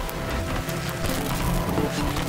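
Experimental electronic glitch and noise music: a dense texture of scattered crackling clicks over an uneven low rumble, with a few brief short tones.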